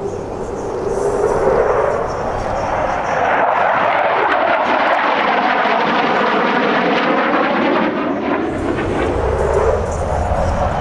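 Military fighter jet flying overhead: a loud, steady jet-engine roar that builds over the first second or so, its tone slowly shifting as the jet passes.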